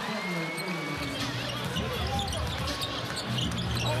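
Basketball game sound inside an arena: the ball bouncing on the hardwood court amid crowd noise. From about a second in, steady low arena music plays underneath.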